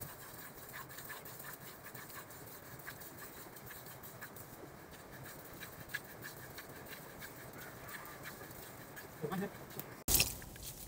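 Cow being milked by hand: faint streams of milk squirting into a plastic bucket, an irregular run of short squirts. A brief low voice-like sound about nine seconds in.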